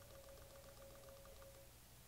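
Near silence: faint room tone with a faint steady hum that stops near the end.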